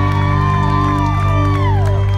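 Live rock band with electric guitars and bass holding one long, steady ringing chord, with a high tone gliding up and down over it, at the close of a song. A few whoops and cheers come from the crowd.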